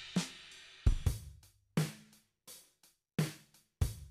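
An 85 BPM hip-hop drum loop sample playing back in a phone music app: kick, snare and hi-hat hits spaced roughly three-quarters of a second apart, each dying away into a short silence before the next.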